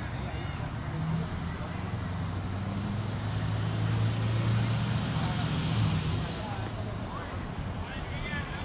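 Engine of a motor vehicle passing by, a low hum that grows louder towards the middle and fades near the end, with a faint high whine that rises and then falls.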